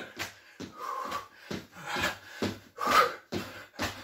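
Trainer-shod feet landing again and again on a wooden floor during star jumps (jumping jacks), about two landings a second, with hard breathing between.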